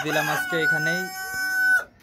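A rooster crowing: a single crow of nearly two seconds that settles into a long held high note and cuts off sharply near the end.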